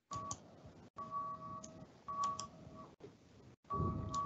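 Telephone keypad (DTMF) tones over a phone line: a steady two-note beep sounds about four times, with faint line hiss between. This is typical of a dial-in caller pressing keys to unmute on a conference call.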